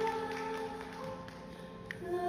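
Live concert music between sung phrases: a held sung note ends just as it begins, leaving soft sustained accompaniment that grows quieter, with one brief click near the end.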